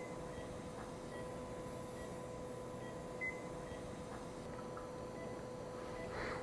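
Operating-room equipment: a steady electrical hum under short, high beeps about once a second, two of them louder, about three seconds apart.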